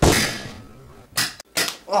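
A sudden loud hit that dies away over about half a second, then two short sharp knocks, and a brief shout of "ah!" just before the end.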